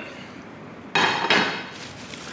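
A single sharp clatter of a plate about halfway through, fading quickly with a short ring: dishware knocking on the hard teppanyaki counter as fried potato chips are put onto it.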